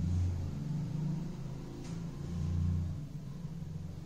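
Low background rumble that swells twice, with a faint click about two seconds in.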